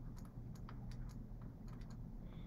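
Faint, irregular clicks and taps of a stylus on a drawing tablet while handwriting, over a low steady hum.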